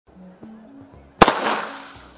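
A starting pistol fired once, about a second in: a sharp crack followed by a ringing echo around the stadium that fades over most of a second. It signals the start of the race.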